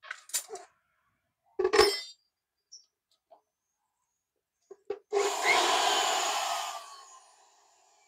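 A small corded power tool, plugged into an outlet of a step-down transformer, runs for about two seconds about five seconds in, then its whine falls in pitch as it coasts down. It shows that the transformer's outlet is live and working.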